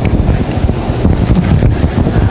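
Loud, low rumbling noise on the microphone, with no voice in it.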